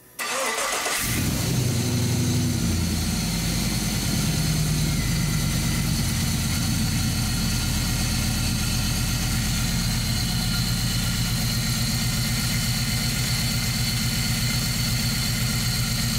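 A 6.0-litre L98 V8 on its standard cam, swapped into a Toyota 80 series Land Cruiser, cranks briefly and catches right at the start. It flares up, then settles within a few seconds into a steady idle.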